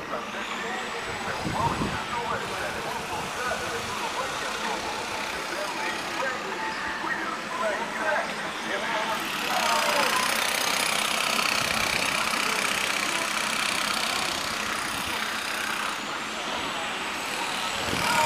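Outdoor street ambience: indistinct voices of passers-by mixed with vehicle noise, growing louder with a steady rush of noise from about halfway in.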